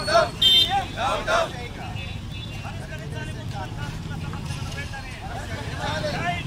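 Voices shouting for the first second and a half, with a brief high tone about half a second in, then a steady low rumble of a motor vehicle engine on a street with faint crowd voices over it.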